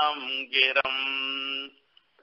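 A man chanting a Sanskrit verse in a melodic recitation voice. His pitch glides at first, then he holds one long steady note that breaks off near the end.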